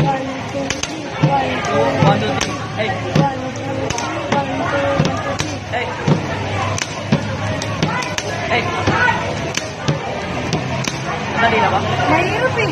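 Pen tapping: pens drummed on a tabletop in a quick beat-box-like rhythm, low thuds for the bass strokes and sharp clicks for the hi-hat, with a shouted "Hey" now and then.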